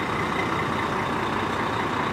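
Fire engine's diesel engine running steadily as the heavy truck pulls slowly away from the curb, with no siren.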